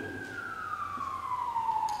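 Emergency vehicle siren in a slow wail, one long sweep falling steadily in pitch.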